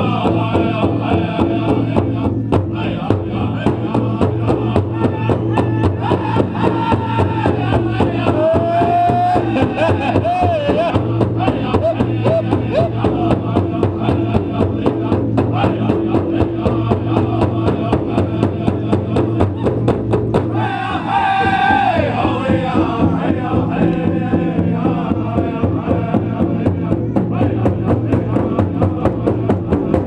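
Powwow drum group beating a large shared drum in a fast, steady beat while the singers chant a fancy dance song in high vocables. About twenty seconds in, a high lead voice starts a fresh verse and the group joins.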